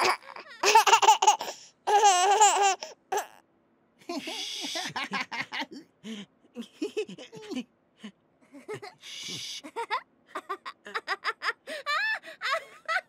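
A baby laughing and giggling in two loud bursts in the first three seconds. After that come soft, hushed sounds: hissy shushing and short stifled giggles, quickening near the end.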